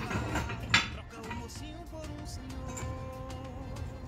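Background music with long held notes, and a single sharp knock just under a second in.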